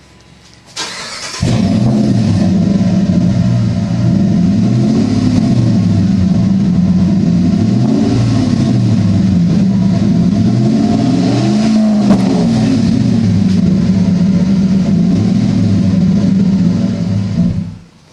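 Dodge Ram pickup's engine started about a second in, heard from behind the truck at the exhaust, then running with a few light throttle blips that rise and fall in pitch. The sound cuts off near the end.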